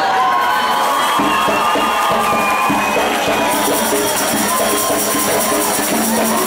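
A group of voices singing an Umbanda ponto, with an audience cheering and shouting over it.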